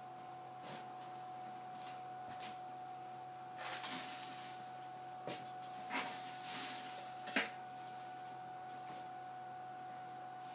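Plastic dustpan and hand brush being handled in short spells of brushing and scraping, with one sharp tap, the loudest sound, a little past the middle. A faint steady tone runs underneath.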